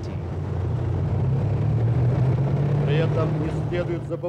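Diesel engines of armoured military vehicles running with a steady low rumble that swells a little midway. A brief voice is heard near the end.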